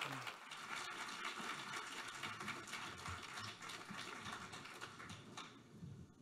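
Audience applauding in a large tent, the clapping thinning out and dying away about five and a half seconds in.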